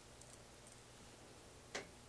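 Near silence: room tone, with a few faint ticks and one short breath in near the end.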